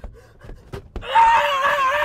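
Two faint knocks, then about a second in a loud, drawn-out, high-pitched yell that wavers in pitch and carries on to the end.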